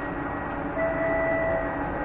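Steady hum and noise from a standing passenger train and its station surroundings, with a faint held tone about a second in.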